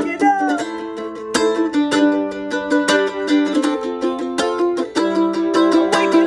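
Acoustic A-style mandolin picked with quick, steady strokes, an instrumental line of ringing notes and chords.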